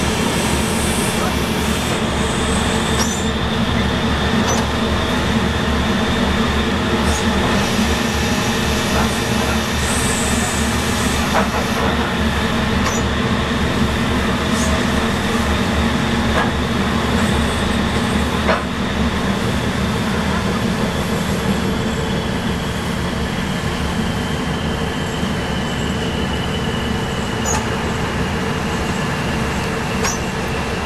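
Steady ship machinery drone with several constant hum tones and a thin high whine that slowly drops in pitch from about two-thirds of the way in, with a few faint clicks.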